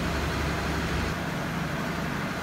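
Steady rumble and hum of a stationary passenger train standing at a station platform, with a constant background hiss and no distinct events.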